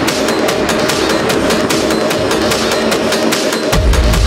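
Techno DJ mix with hi-hats ticking steadily while the kick and bass drop out, then the bass comes back in just before the end.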